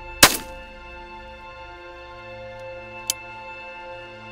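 Background music with steady sustained notes, cut through about a quarter second in by one loud shotgun shot, and a much fainter sharp crack about three seconds in.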